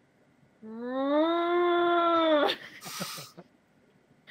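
A person's voice making a drawn-out, whining animal-like cry in place of words, rising at first then held steady for about two seconds before cutting off suddenly. A short breathy noise follows.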